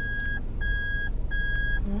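A car's reverse-gear warning beeper, heard from inside the car while parking, sounding a steady, evenly repeated electronic beep about once every 0.7 seconds, each beep about half a second long.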